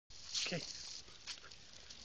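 Two bulldogs snorting and grunting as they play.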